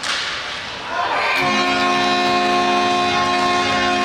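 Arena goal horn sounding a steady, loud note from about a second and a half in, signalling a goal, over a rise of crowd noise; a sharp crack comes at the very start.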